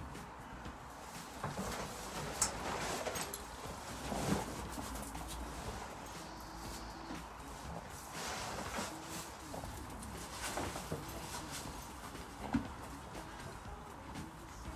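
Low cooing calls of a bird, with scattered knocks and rustles as overreach boots are fastened onto a horse's front legs.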